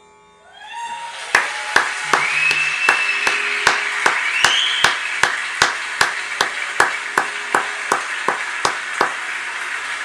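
Concert hall audience applauding and cheering as the tabla and bansuri performance ends, with a couple of rising whistles and a steady clap sounding two to three times a second over the crowd's applause.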